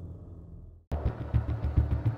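The last low tail of intro music dies away to a moment of silence. Just before a second in, a steady low engine-like rumble with fast, even ticking cuts in suddenly.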